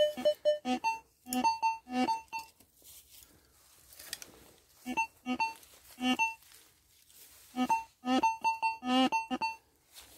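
Metal detector giving short electronic beeps of varying pitch as its coil sweeps over targets in the ground. The beeps come in three quick runs: one at the start, one about five seconds in and one near the end, with quiet gaps between.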